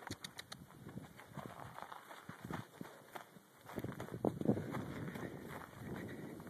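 Clydesdale horse walking over on dry dirt, his hooves falling unevenly, with a few heavier steps about four seconds in.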